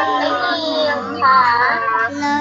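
A child's voice singing the Thai consonant recitation to a simple melody, in held, gliding notes, between the chanted syllables for ห (หอ หีบ) and ฬ (ฬอ จุฬา).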